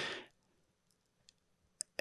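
A pause in a man's speech into a close handheld microphone: after a word fades out, near silence with a few faint mouth clicks, the clearest just before he speaks again.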